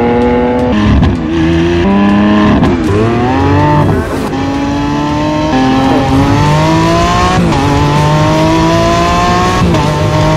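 Lamborghini Aventador S's V12 engine accelerating hard through the gears: the pitch climbs steadily, drops at each quick upshift and climbs again, several times over.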